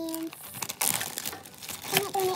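Crinkling and rustling handling noise close to the microphone. It is loudest about a second in, and a short held note from a child's voice opens it.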